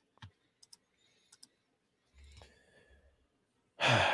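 A few faint, scattered clicks of a computer mouse advancing a presentation slide, with a brief soft low rumble a little after two seconds, otherwise near silence.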